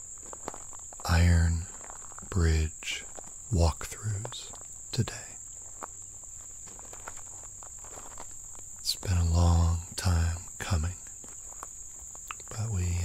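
Insects singing in a steady, high-pitched chorus that runs throughout, with a few footsteps crunching on a gravel path.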